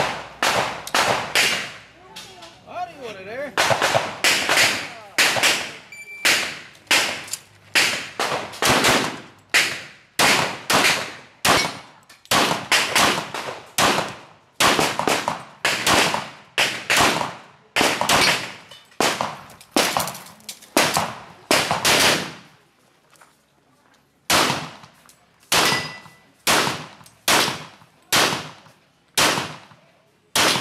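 Pistol fired rapidly in strings of shots, often in quick pairs, dozens of shots in all. There is a short lull about two seconds in and a longer break about twenty-two seconds in before the firing resumes.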